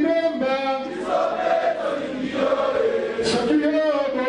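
Voices singing a chant together, a melody of long held notes that step and glide from one pitch to the next.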